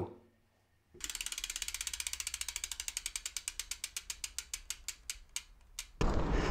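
Bicycle freewheel hub ticking as a spun wheel coasts, its pawls clicking rapidly at first, then more and more slowly and faintly until the wheel nearly stops. The ticking starts about a second in.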